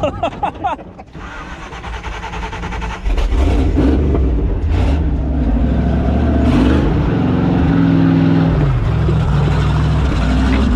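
Jeep TJ Wrangler rock crawler's engine revving hard from about three seconds in, climbing a steep rock face, its pitch rising and falling with the throttle. Heard from inside the open, doorless cab.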